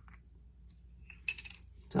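Plastic screw cap of a drink bottle being twisted open: mostly quiet, then a quick run of small sharp clicks in the second half.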